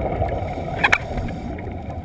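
Muffled low rumble of water noise heard through an underwater camera housing during a scuba dive, with two sharp clicks close together a little before the middle.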